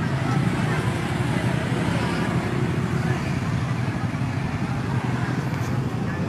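Steady low rumble of a motor vehicle engine running close by, with traffic and onlookers' voices mixed in.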